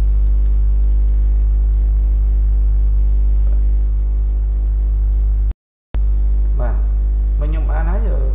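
Loud, steady electrical mains hum at about 50 Hz with a ladder of overtones, running under the recording. It cuts out completely for about half a second roughly five and a half seconds in, and a voice starts speaking over it near the end.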